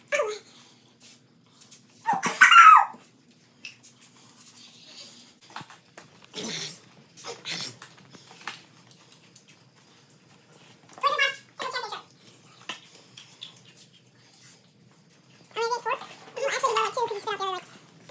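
A boy's short vocal sounds in scattered bursts, the loudest about two seconds in and a longer run near the end, with quiet gaps between.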